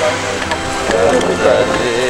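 Brief untranscribed voices, the group's chatter or laughter, over a steady low background hum.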